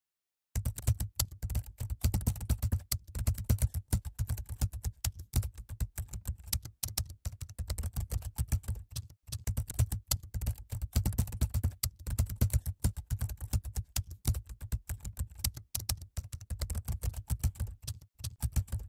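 Keyboard typing sound effect: fast, continuous clicking of keystrokes that starts about half a second in, accompanying text typed out on screen.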